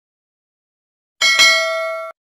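Notification-bell 'ding' sound effect from a subscribe-button animation, starting about a second in with a sharp click, ringing with several steady tones and cutting off abruptly.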